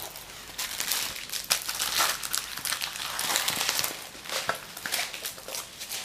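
Crinkling of the clear plastic film covering a diamond painting canvas as the canvas is handled and moved, a continuous run of irregular crackles.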